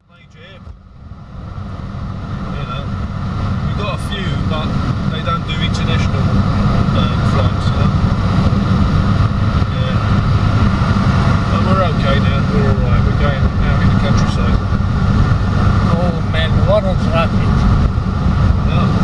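Steady low rumble of tyres and engine heard inside a car's cabin at motorway speed. It swells up from near silence over the first few seconds, then holds level.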